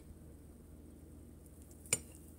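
A metal fork clinks once, sharply, against a plate near the end as it cuts down through a slice of cornmeal pudding; otherwise only a faint low hum.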